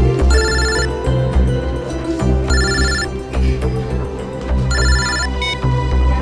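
A mobile phone ringing: a trilling electronic ringtone in short bursts about every two seconds, over background music with a steady low beat.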